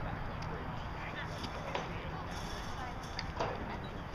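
Distant voices of players and spectators calling out across a lacrosse field, faint and brief, over a steady low outdoor rumble.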